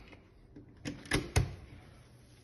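Three short, sharp clicks in quick succession, starting a little under a second in, from handling the small electrical setup on the bench.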